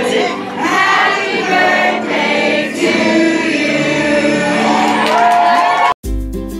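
A group of voices singing a birthday song along with music, rising to a long held note near the end.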